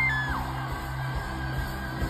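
Live band holding the closing sustained chords of a ballad, with an audience member's high, held whoop that slides down in pitch in the first half-second.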